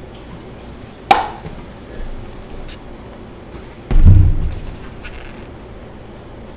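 Handling noise at a work table: a sharp tap with a short ring about a second in, then a heavy, low thump about four seconds in, with a few lighter knocks around them.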